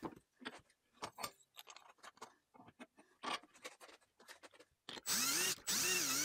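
Scattered light clicks and taps, then near the end a power drill spins up with a rising whine and runs a step bit in the hole of a thick aluminium plate, in two short bursts, cutting the steps from the back side for an even hole.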